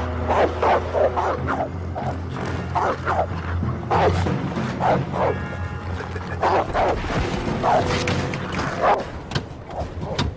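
Repeated short dog-like barks and yips, over a film music score with a steady low rumble that stops about four seconds in.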